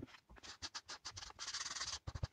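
Folded foam sponge rubbed over a roughly sanded softwood board to apply water-based wood stain: faint scratchy strokes that quicken into a continuous rub over the last half second.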